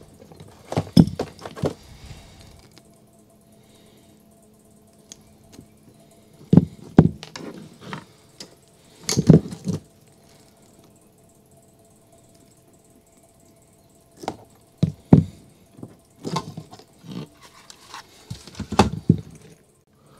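Handling noises of wiring being worked on: small clicks, taps and rustles of wire crimp connectors and a plastic detector housing being handled, and small parts being set down. They come in irregular bursts a few seconds apart, with quiet between.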